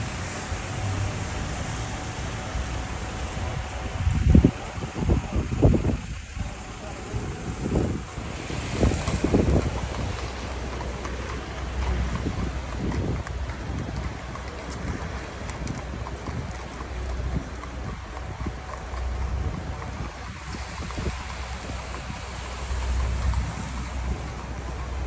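Outdoor city street ambience: a steady background of traffic with wind buffeting the microphone, strongest in a run of gusts between about four and ten seconds in.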